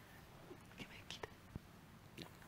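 Faint off-mic whispering while a handheld microphone is passed over, with a soft low bump from the mic being handled about one and a half seconds in.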